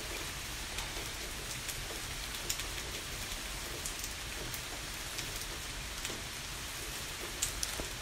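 Steady background hiss with a few faint scattered ticks.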